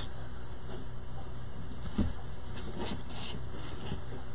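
Steady low background hum with faint rustling and one soft knock about two seconds in.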